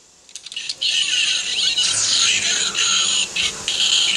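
Bright electronic music and sound effects of the kind the Kamen Rider Ex-Aid Gamer Driver plays, hissy and busy with small clicks and squeaks, coming in a moment after a brief hush.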